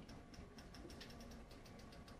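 Near silence: room tone with faint, rapid, evenly spaced ticking, several ticks a second.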